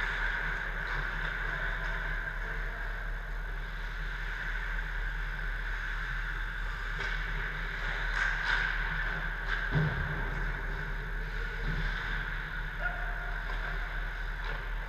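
Steady hum of an indoor ice arena, with a few faint clacks of sticks and pucks from hockey play at the far end of the rink, most of them in the second half.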